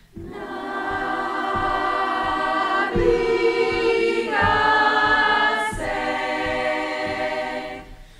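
A choir singing long held chords, the harmony shifting to a new chord a few times before the sound fades away near the end.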